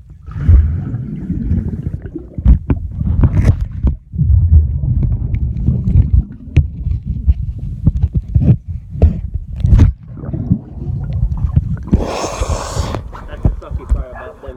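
Muffled underwater sloshing and rumble picked up by a phone held under the water of a swimming pool, with many sharp knocks and thumps. About twelve seconds in comes a brief, bright rush of splashing water as the phone breaks the surface.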